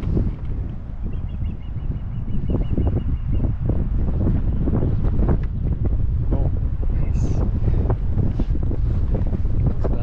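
Wind buffeting the microphone as a steady, heavy low rumble, with scattered knocks and handling sounds. A short, high, rapid chirping trill runs for about two seconds, starting about a second in.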